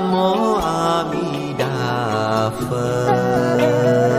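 Buddhist devotional chant sung in long, sustained notes with gliding ornaments over a soft instrumental accompaniment; the melody moves to new notes about a second and a half in.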